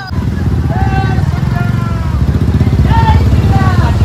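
Motorcycle and scooter engines running in a group ride, one of them close by with a loud, steady low throb. Voices call out briefly over the engines about a second in and again near the end.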